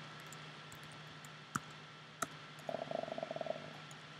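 Computer keyboard typing, faint: two single key taps, then a quick run of keystrokes shortly before the end, over a low steady hum.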